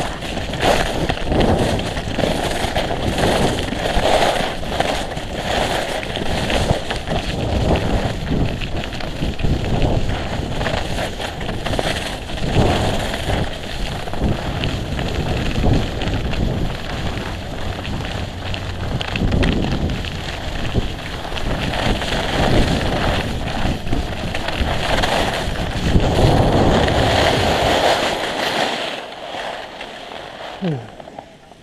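Wind buffeting an action camera's microphone while skiing downhill, mixed with the scrape and crackle of skis carving over packed snow, in uneven surges. It dies down near the end as the skier slows to a stop.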